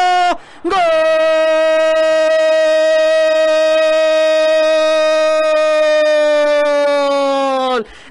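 A Spanish-language football commentator's loud, drawn-out goal cry. A short shout ends just after the start, then one long held "gol" runs about seven seconds and sags in pitch at the very end.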